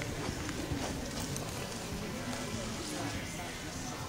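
Indistinct voices and background music, with the hoofbeats of a horse moving on the arena's dirt footing.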